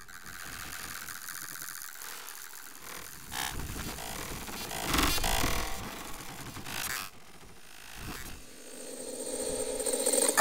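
Electroacoustic music made of noisy, rumbling, engine-like textures that swell and fade, loudest about halfway through, then building again near the end.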